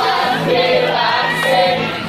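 A group of teenage students singing a class cheer song together, loud and lively, with an acoustic guitar accompanying.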